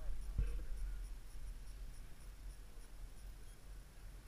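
Low rumble and scratchy rubbing on the camera's microphone as it moves, with a thump about half a second in and a faint high ticking about three times a second.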